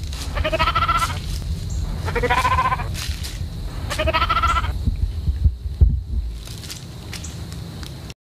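A sheep bleating three times, about two seconds apart, each call wavering, over a steady low rumble. A few sharp knocks come a little past halfway, the loudest being about six seconds in.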